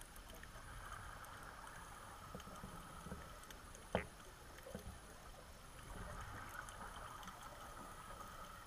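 Faint underwater ambience: a steady low hiss with a few scattered small clicks, and one sharp click about halfway through that stands out as the loudest sound.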